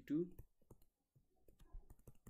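Faint, irregular clicks and taps of a stylus on a tablet screen as an equation is handwritten.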